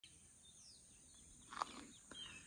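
Faint outdoor ambience: a few faint bird chirps over a steady high hiss, with one short knock about a second and a half in.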